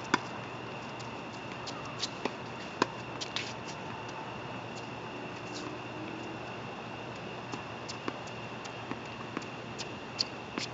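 Tennis ball being struck by rackets and bouncing on a hard court during a rally: sharp single pops a fraction of a second to a second apart, the loudest about three seconds in, with fainter, sparser ones later over a steady background hiss and a faint high whine.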